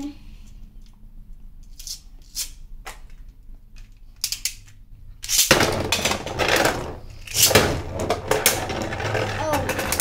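Two Beyblade spinning tops launched into a clear plastic stadium about five seconds in, after a few light clicks of setting up: a sudden loud whir of spinning plastic and metal with repeated sharp clacks as the tops hit each other and the stadium walls.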